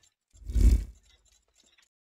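Sound effect of an animated logo outro: one short whoosh with a deep thud under it, lasting about half a second, then a few faint ticks near the end.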